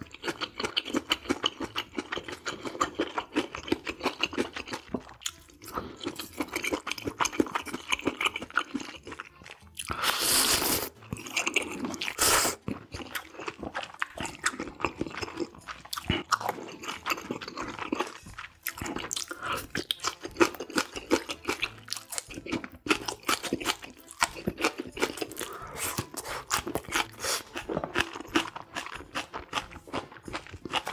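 Close-miked eating: wet chewing of noodles and crunching of green onion kimchi stalks, with many quick mouth clicks. About ten seconds in comes a brief louder rush of noise, and a shorter one follows soon after.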